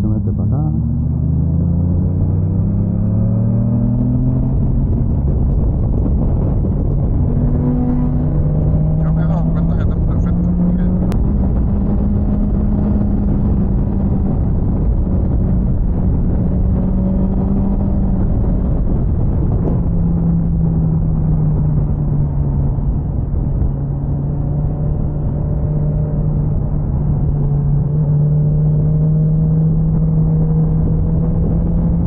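BMW S1000XR inline-four motorcycle engine heard from the rider's seat: the revs climb over the first few seconds as the bike accelerates, then the engine holds a steady cruise with small rises and falls. Heavy wind rush on the microphone runs underneath.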